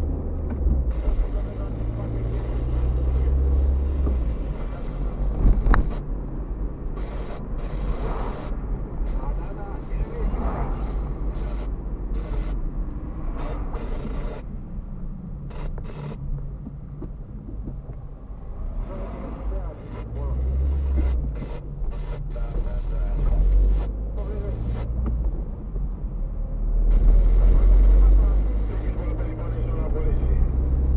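Car engine and road rumble heard from inside the cabin while driving at low speed, the low drone rising and falling as the car speeds up and slows. A sharp click sounds about six seconds in.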